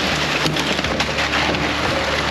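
Thin sheet ice cracking, crunching and splintering against a metal pontoon hull as the boat pushes through it: a dense, continuous run of sharp crackles over a steady low hum.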